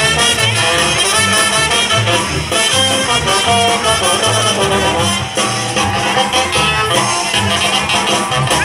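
Carnival band music with brass to the fore, played loud with a steady dance beat for the huehue dancers.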